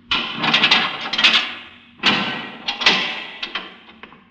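Sound effects from a 1950 radio drama: two bursts of scraping, clattering noise with sharp knocks in them, about two seconds apart.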